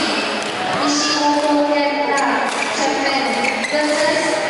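People talking close by in a large echoing hall, with a few sharp knocks of badminton rackets striking the shuttlecock during a rally.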